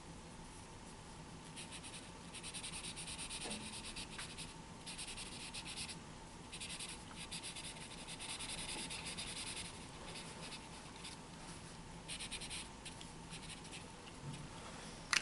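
Large felt-tip marker rubbing across a paper easel pad in several runs of quick, short strokes with brief pauses between them, as it fills in solid black areas of a drawing.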